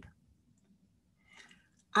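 A pause in a man's speech: near silence, with one faint brief sound about one and a half seconds in, and talk starting again at the very end.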